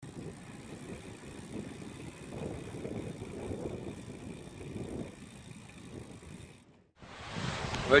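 Riding noise from a road bicycle on the move: a low, uneven rumble of tyres on the road with wind on the microphone. It drops out just before the end, where a different windy background comes in.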